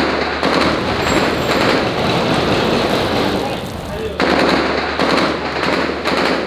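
Rapid automatic fire from an AK-type assault rifle, echoing between the buildings, in two long stretches with a brief break about four seconds in.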